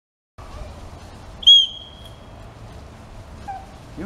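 A single short, high-pitched blast on a dog-training whistle about a second and a half in: the recall signal calling the dog back.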